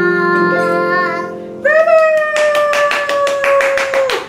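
A young girl singing over a sustained instrumental accompaniment, then holding one long, slightly falling note from a little under halfway through to the end. Quick, even hand-clapping joins the held note about halfway through.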